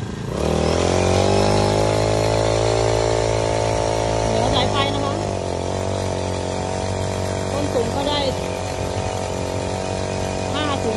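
A small petrol engine driving a spray pump speeds up about half a second in, then runs steadily under load, with the hiss of a high-pressure water jet from the spray wand.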